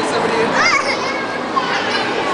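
Hubbub of many young children playing and chattering, with one child's high, wavering voice rising above it about half a second in.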